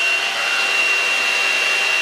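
BaByliss hot air styling brush running steadily: a rushing fan with a thin high whine over it.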